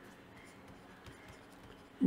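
Faint scratching of a stylus writing on a pen tablet, in near silence.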